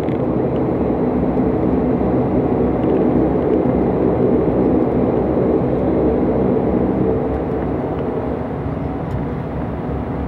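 Bombardier Dash 8 Q400's Pratt & Whitney PW150A turboprop engine and propeller running while taxiing, heard from inside the cabin: a steady hum of several low tones over a rushing noise, easing slightly in the last few seconds.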